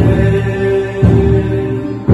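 Group singing of a slow worship song with held notes, over a deep drum struck about once a second.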